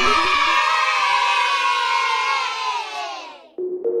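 Channel intro jingle ending on a children's cheer sound effect over music, which fades out about three and a half seconds in; a soft music tone begins just before the end.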